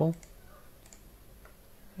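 Faint computer keyboard typing: scattered soft key clicks.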